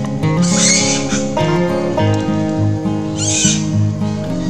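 Background music playing throughout, with two shrill macaque calls over it: a longer one about half a second in and a shorter one about three seconds in.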